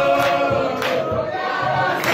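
A congregation singing a praise song together, with hand claps in time about twice in the first second.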